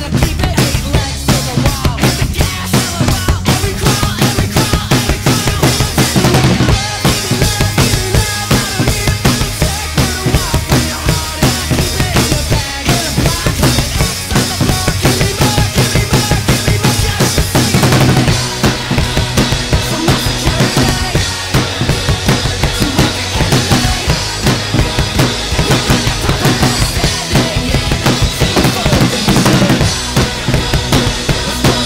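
Acoustic rock drum kit played hard to a fast, driving beat, with kick drum, snare and crashing cymbals, over the recorded pop-punk song it is covering. The snare is close-miked and sits too far forward in the mix.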